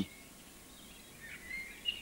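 Faint background bird chirps, a few short calls that grow a little louder about a second and a half in.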